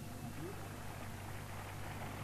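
Quiet background between items: a steady low hum under a faint even hiss, with no distinct sound event.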